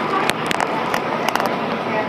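Inside a C-Train light-rail car rolling slowly into a station: a steady rumble of running noise with several sharp clicks scattered through it.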